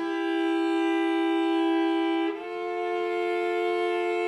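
Cello bowed in long, slow sustained notes, two pitches sounding together as double stops. The chord changes once about halfway through, when the upper note steps up while the lower one holds.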